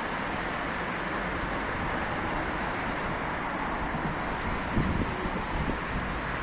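Steady street traffic noise mixed with wind buffeting the phone's microphone.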